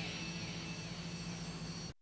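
Steady low hum with hiss and a faint thin high whine, cutting off suddenly just before the end.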